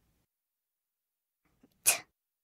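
Near silence, then near the end a short, breathy spoken 't' sound, the first sound of the word 'tub' being sounded out.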